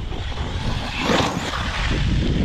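Traxxas Sledge RC monster truck speeding over dirt and launching off a jump: a rushing noise of motor and tyres that builds and peaks about a second in, over a low rumble.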